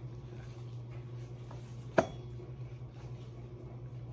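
An eyeshadow palette in its cardboard box being worked at to get it open: faint handling noise with one sharp click about two seconds in. A steady low hum runs underneath.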